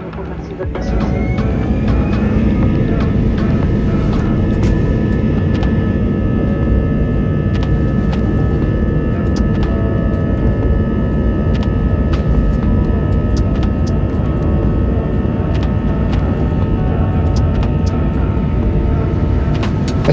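Airbus A321 takeoff heard from inside the cabin: about a second in the engines spool up with a rising whine, then run loud and steady with a constant whine over a deep rumble through the takeoff roll and climb, with scattered small clicks and rattles.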